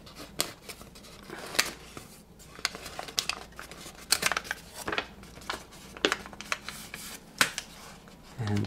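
Creased sheet of origami paper crinkling and crackling under the fingers as it is collapsed along its pre-folded creases, a run of irregular sharp snaps of uneven loudness.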